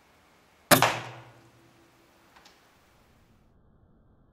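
A single air rifle shot about a second in, sharp and fading over about a second with a short ringing tail. A faint click follows a second and a half later.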